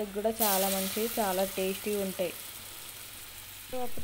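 Dough dropped into hot cooking oil in a steel frying bowl. The oil bursts into a loud sizzle about a third of a second in, then settles over the next two seconds to a quieter, steady frying hiss.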